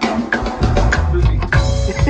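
A band playing a groove: drum kit strikes over a heavy electric bass line, which comes in strongly about half a second in.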